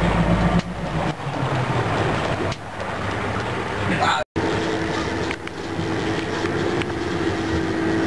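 A fishing boat's engine running steadily under a haze of wind and water noise. The sound cuts out for an instant a little past halfway.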